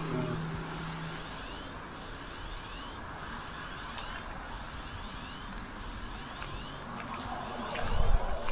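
Outdoor background hiss with short, high, rising chirps repeating about twice a second from about two seconds in, typical of a calling cicada; a few faint clicks near the end.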